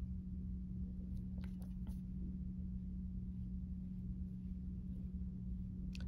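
Quiet room with a steady low hum, and faint soft rubbing as a finger and a soft rib smooth the wet clay seam of a slab cylinder, a few light scrapes about a second and a half in.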